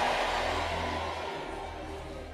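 Large congregation shouting back together, the noise fading away over about a second and a half, over a steady held keyboard chord.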